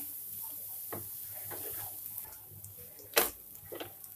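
Spatula stirring grated raw papaya in a frying pan: soft scraping with a few sharp knocks of the spatula against the pan, the loudest a little after three seconds in.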